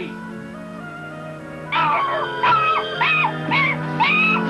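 Background music with a held low note; from about halfway through, a run of short, high whimpering yelps.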